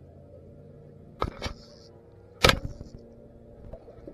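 Handling knocks on an action camera worn at the arm as the angler moves: three sharp knocks, at about one second, a second and a half, and two and a half seconds in, the last the loudest, over a faint steady hum.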